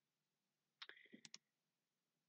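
A short cluster of faint computer mouse clicks about a second in, otherwise near silence.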